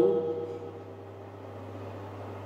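A man's sung vọng cổ note trails off just at the start, leaving a pause between phrases that holds only a steady low hum and a faint hiss.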